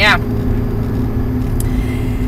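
A car's engine and road noise heard from inside the cabin while driving: a low, steady drone.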